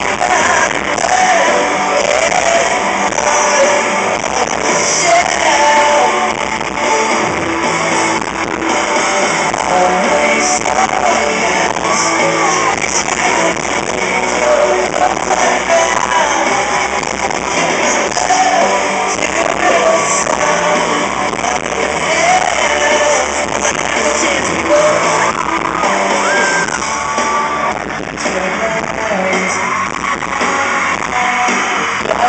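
Live pop-rock band playing, with a male lead vocal over guitars, recorded from the crowd at a concert.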